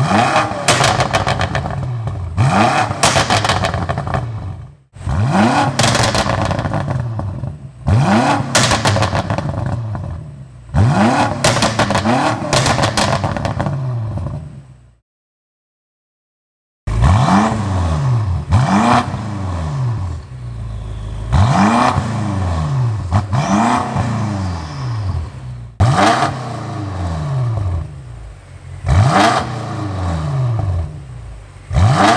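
BMW F90 M5's twin-turbo V8, exhaust filter (OPF) deleted, revved repeatedly while stationary, about every two seconds. Each rev rises sharply and falls back, with loud crackles, pops and bangs from the exhaust as it drops. After a short silence, the revving carries on with the car in Comfort mode.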